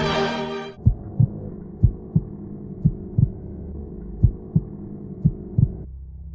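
A heartbeat sound effect: five pairs of low thumps, about one pair a second, over a steady low drone, starting as the music cuts off just under a second in.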